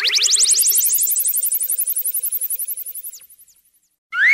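An editing sound effect: a rapid train of pulses rising steeply in pitch, then holding high and fading out about three and a half seconds in, with a few short falling chirps just before it dies away.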